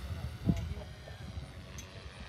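Goosky RS4 electric RC helicopter flying far off: a faint steady motor and rotor whine over a low rumble.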